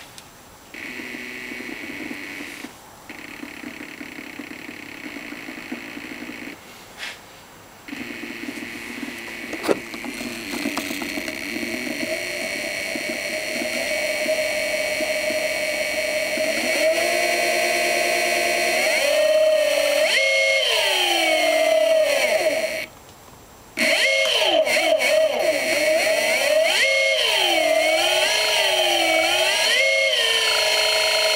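Golden Motor BLT-650 electric motor spinning with no load on 20S (about 76 V): a whine that switches on and off a few times, then holds steady and grows louder. From about 17 seconds in, its pitch glides repeatedly up and down as the speed is varied, with a brief cut-out about 23 seconds in.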